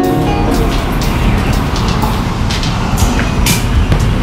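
The live band's keyboard music breaks off about half a second in, leaving loud, steady outdoor noise with a low rumble like passing traffic and a few short clicks and clatters.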